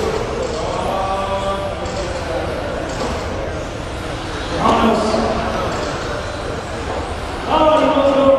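Race announcer's amplified voice in short phrases, echoing in a gymnasium, over the steady noise of electric RC touring cars running on the track.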